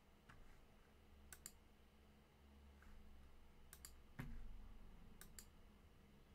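Faint computer mouse clicks, three quick double clicks spread over a few seconds, against near-silent room tone, with a brief low rumble about four seconds in.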